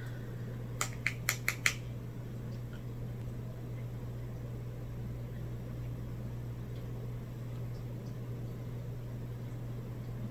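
Steady low hum of room noise, with a quick run of four or five light clicks about a second in.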